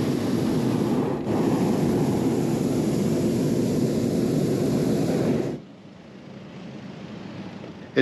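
Hot air balloon's propane burner firing during lift-off: a loud, steady rushing noise with a brief break about a second in, cutting off suddenly about five and a half seconds in.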